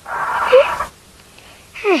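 A person's short, breathy vocal huff lasting just under a second, with a brief rising squeak in it; near the end a short, falling "mm".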